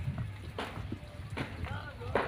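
Indistinct shouting voices over a low, steady rumble of wind on the microphone.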